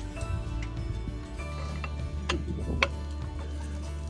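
Background music with sustained tones over a steady low bass, and two sharp clicks about half a second apart past the middle.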